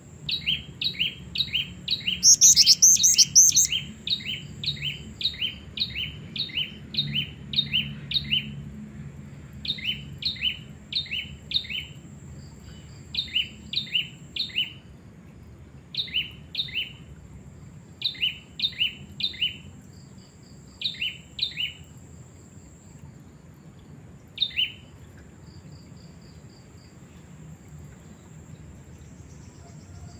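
Female black-winged flycatcher-shrike (jingjing batu) calling: quick high chirping notes in a long run for the first eight seconds or so, then short bursts of two to four notes, stopping about 25 s in. A louder, shriller burst cuts in about two seconds in, and a faint steady high whine runs beneath.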